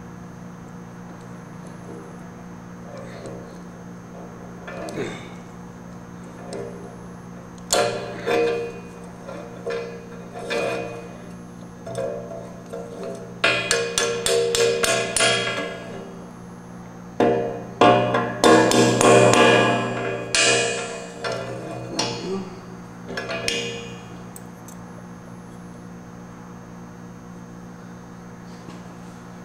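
Small hammer tapping on a steel go-kart spindle: scattered single knocks, then a quick run of about eight taps, then a denser spell of taps and rattles, over a steady low hum.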